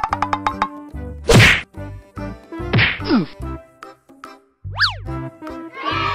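Cartoon-style comedy sound effects over background music. A quick rattling run rises in pitch at the start, a loud whack comes about a second and a half in, a falling whistle-like glide follows near three seconds, and a fast swoop up and down in pitch comes near five seconds.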